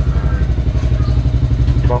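An engine idling nearby, a steady low throb with a fast, even pulse, with a voice starting a word near the end.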